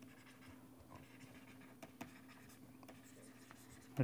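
Faint ticks and light scratches of a stylus writing on a pen tablet, over a low steady hum.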